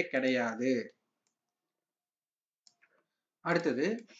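A man talking, then a pause of dead silence broken by a single faint click about two-thirds of the way through, before he talks again near the end.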